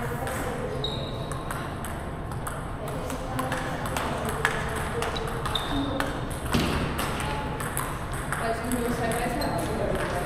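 Table tennis balls clicking irregularly off paddles and tables during rallies at several tables at once, with a couple of sharper hits about halfway through.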